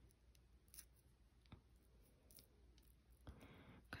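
Near silence with a few faint, short clicks: long acrylic nails lightly tapping the small brush's metal ferrule and handle as the fingers work its bristles.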